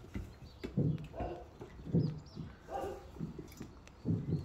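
Puppies making several short yips and whimpers, one after another, while crowding together to eat from a shared food bowl.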